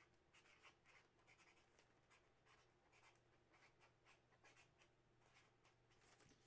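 Very faint pen scratching on paper in short, irregular strokes, over a low steady hum.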